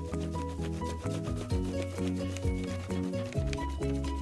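Background music with a steady bass line, over the scratchy back-and-forth rubbing of a wax crayon on paper laid over a cardboard collagraph plate.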